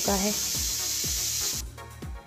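Keema (minced meat) sizzling in oil in a karahi, an even hiss that cuts off sharply near the end, over background music with a steady beat. The sizzle is the sign that the yogurt's water has cooked off and the oil has separated and risen to the top.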